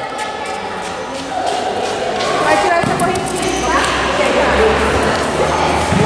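Many children's voices echoing in a large hall, with occasional thuds of a futsal ball on the hard court floor.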